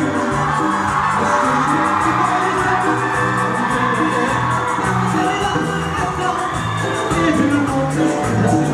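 Live band playing upbeat Latin-style pop music with a singer, guitars and drums, and the crowd whooping along.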